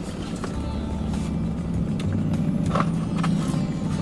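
Steady low hum inside a car, with a few short rustles and clicks as a cardboard food tray is picked up and handled.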